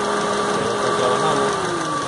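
Idling engine with the electric radiator cooling fans running, forced on by a wire jumper across the fan's coolant-temperature switch, giving a steady whine. Near the end the whine falls in pitch as the jumper is released and the fans spin down. The fans run when bridged, which shows the fans, relay and fuse are good.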